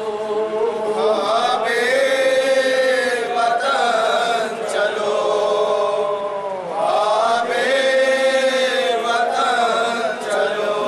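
Urdu noha, a mourning lament, chanted by a male reciter into a microphone, with a group of men joining in. It runs in two long held phrases, the first ending in a falling glide about six and a half seconds in.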